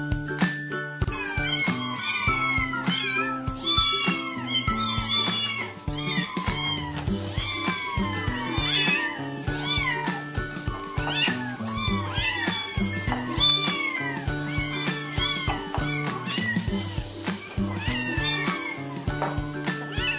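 Several kittens meowing over and over, short high rising-and-falling mews about one to two a second, with background music underneath.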